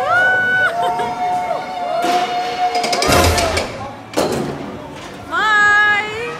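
Riders on a suspended roller coaster screaming: several long, held, overlapping screams at different pitches. About three seconds in, the coaster train makes a brief loud rush as it passes, and another high scream comes near the end.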